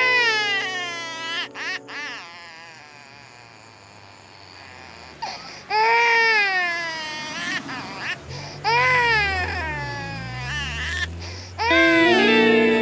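A baby crying in three long wails, each rising and then falling in pitch: one at the start, one about six seconds in and one about nine seconds in. A low drone sits under the last few seconds.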